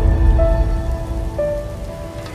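Intro music sting for an animated logo: a few held synthesized notes that change pitch twice, over a deep rumble that slowly fades.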